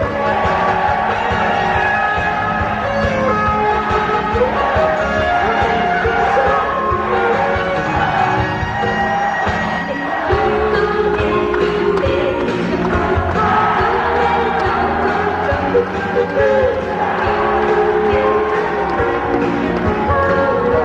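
A 1980s Japanese idol pop song performed live by a band, with a woman singing the lead melody over a steady drum beat and bass.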